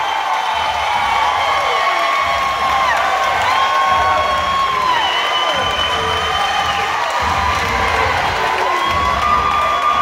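Crowd cheering and yelling, with many long drawn-out shouts overlapping, celebrating a knockout win.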